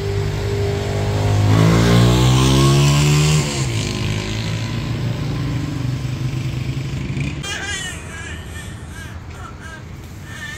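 A motor vehicle running close by, its engine pitch rising as it accelerates and loudest about two to three seconds in, then settling to a lower steady hum that fades after about seven seconds. A few short high calls come near the end.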